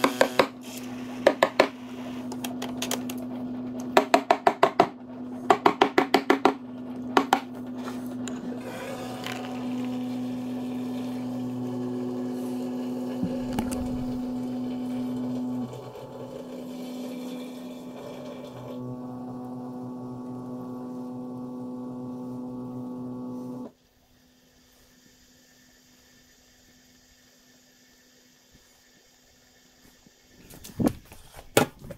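Capsule espresso machine running with a steady pump hum, broken early on by short trains of rapid clicking and later by a hissing stretch while milk is steamed. It cuts off abruptly about two-thirds of the way through, leaving near quiet.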